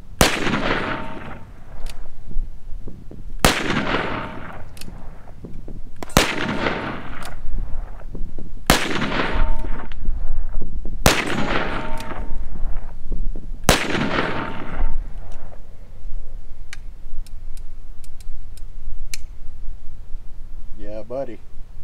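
Six shots from a Ruger Blackhawk Convertible single-action revolver firing 10mm, spaced about two and a half seconds apart, each shot trailing off over about a second. After the last shot come a few faint clicks as the revolver is handled.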